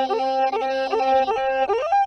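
Traditional Amhara vocal chant: a single voice holds long notes and breaks quickly from one pitch to another, a yodel-like ornamented style, over a low steady tone that stops near the end.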